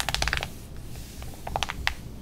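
Glossy magazine pages crackling and ticking under the hands as a freshly turned page is pressed flat: a quick cluster of crisp clicks at the start, then a few more about a second and a half in.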